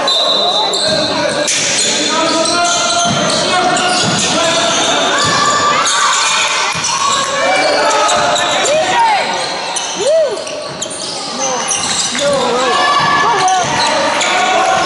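Basketball bouncing on a sports hall's wooden court during play, with basketball shoes squeaking sharply on the floor a few times in the second half, and players' and spectators' voices echoing in the hall.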